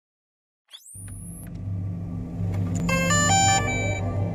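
Logo sting for the DJI Mavic: a quick rising whoosh under a second in, then a low steady hum that swells and a short run of stepped electronic chime notes about three seconds in.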